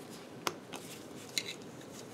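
A few faint, sharp metal clicks and light scraping as small steel gearbox parts are worked onto a shaft by hand with a screwdriver.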